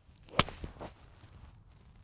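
Golf iron swung down and striking the ball off the turf: a short swish rising into one sharp crack about half a second in, then a fainter swish of the follow-through. A well-struck shot.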